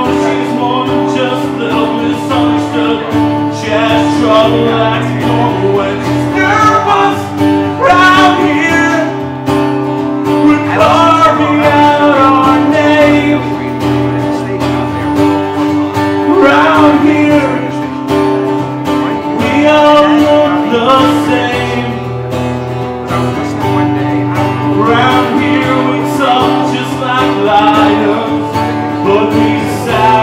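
Solo male singer with acoustic guitar: he sings a slow melody over sustained guitar chords, with long held vocal phrases.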